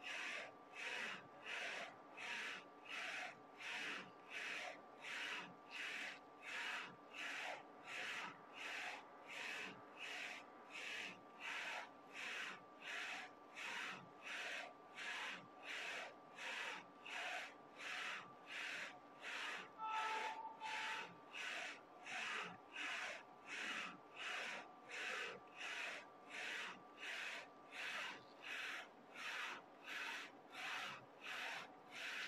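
Print-head carriage of a Focus Combo Jet A3 UV flatbed printer shuttling back and forth across the bed while printing, each pass a short whirring sweep in an even rhythm of about three passes every two seconds, over a faint steady hum. A brief two-note beep-like tone sounds about two-thirds of the way in.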